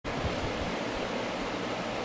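Steady background hiss with no distinct events: room noise before any talking.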